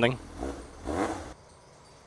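A motorcycle engine running at a low idle, with faint talk over it, cutting off suddenly a little over a second in.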